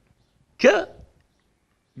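A man's voice saying a single short Albanian word, then a pause in his speech.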